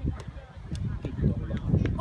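Irregular low rumble and knocks on the microphone, growing louder toward the end, under faint distant children's voices on an outdoor football pitch, with one sharp click a fraction of a second in.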